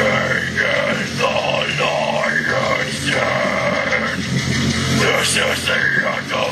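Deathcore harsh vocals: a man growling and screaming into a cupped handheld microphone, in short phrases, over the song's heavy metal backing track.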